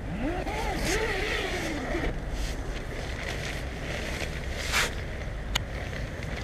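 Tent door zipper drawn open in one long pull, its pitch rising and falling with the speed of the pull over the first two seconds. A brief scuff and a sharp click follow near the end.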